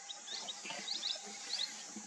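Small birds chirping in the background, short high chirps several times a second in an irregular pattern, over a steady outdoor hiss.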